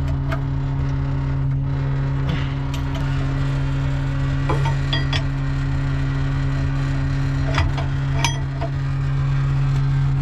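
Tanker truck's diesel engine running steadily at low RPM with the PTO engaged to drive the pump, a constant low hum. A few metal clinks of a spanner wrench on the tank's outlet fitting and hose coupling come in the second half.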